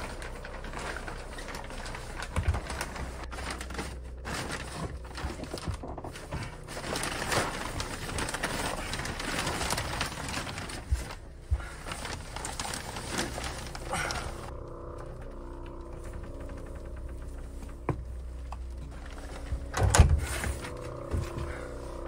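Plastic sheeting crinkling and rustling, with small clicks and knocks as things are moved about during a search through a cluttered shed. About two-thirds of the way in, this gives way to a low steady drone, and a heavy thud comes near the end.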